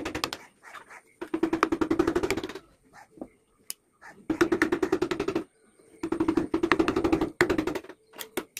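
A hand carving chisel tapped rapidly with a mallet as it cuts scroll grooves in teak, giving quick sharp taps about ten a second in bursts of a second or so with short pauses between.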